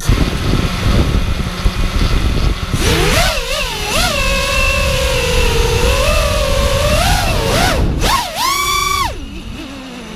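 Brushless motors of an FPV racing quadcopter (Scorpion 2204/2300) spinning DAL T5040 V2 three-blade props, heard from the camera on board. They spin up suddenly at the start, then whine in a pitch that rises and falls with the throttle, with a sharp climb and drop about eight to nine seconds in. A low rumble of wind on the onboard microphone runs underneath.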